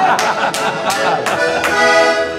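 Portuguese concertina (diatonic button accordion) playing a traditional dance tune between sung verses of a desgarrada, with sustained reedy chords and a sharp beat about every 0.4 seconds.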